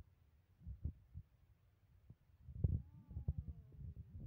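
Scattered low, dull bumps of a handheld phone being moved, with a faint short voice-like call about three seconds in.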